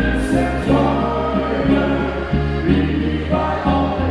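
Oberkrainer folk quintet playing live, with singing over clarinet, guitar and a steady bass line.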